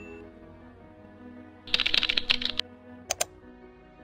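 Computer-keyboard typing sound effect: a quick burst of keystrokes lasting about a second near the middle, followed by two sharp clicks, over soft background music.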